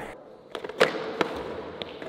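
Bongo board stepped off on a concrete floor: the skateboard deck clacks down and the plastic roller rolls, giving a few sharp knocks over a light rolling hiss, the loudest knock just under a second in.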